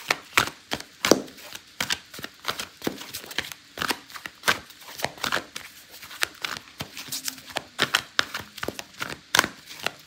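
A deck of tarot cards shuffled by hand: a run of quick, sharp card slaps and flicks, a few every second.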